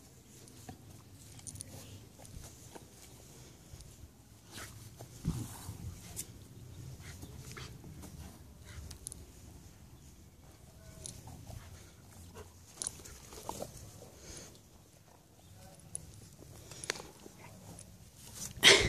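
A golden retriever faintly mouthing and playing with its toys, with scattered short clicks and rustles and one louder knock about five seconds in.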